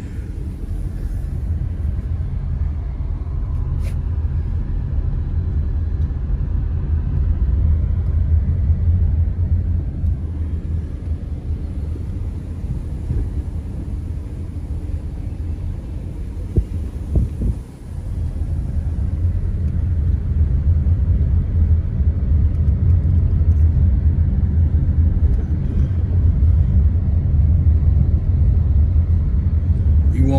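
Low, steady rumble of a car driving along a street, heard from inside the car. It dips briefly about 18 seconds in, then carries on.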